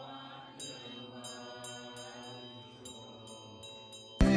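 Faint, low voices chanting a Tibetan Buddhist mantra, punctuated by short, high ringing strikes of a small bell repeated irregularly, several per second in the second half.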